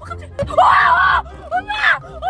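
A woman shouting loudly in a high, strained voice: one long yell about half a second in, and a shorter rising shout near the end.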